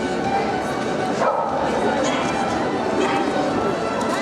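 Small dogs yapping and barking over a constant murmur of voices from the crowd in the hall.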